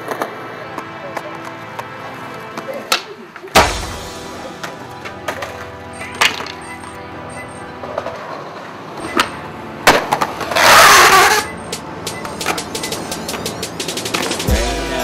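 Skateboard tricks over background music: several sharp cracks of the board popping and slamming down on concrete, the loudest about three and a half seconds in and again near ten seconds. Right after the second one comes a loud scraping rush lasting about a second.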